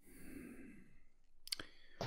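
A man breathing out in a soft sigh close to a microphone while he thinks, followed by a short mouth click about one and a half seconds in.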